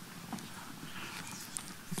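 Faint footsteps and small knocks of a handheld microphone being carried and handled, over quiet hall room tone with a low murmur.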